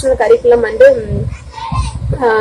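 Speech only: a woman's high-pitched voice talking.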